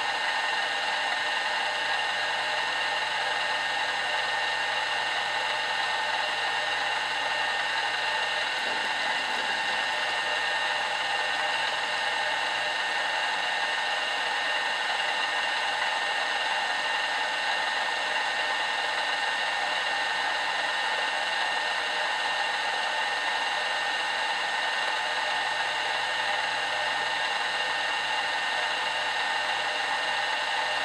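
Milling machine running steadily: an even motor-and-spindle whir with a few constant whining tones.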